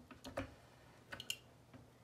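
Faint clicking from a Daytona 2-ton aluminum floor jack being pumped up. Short clicks come in small groups roughly once a second, one group per handle stroke, as the lift arm rises.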